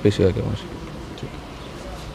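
A man's voice trails off in the first half second, then steady low background noise with a faint rumble.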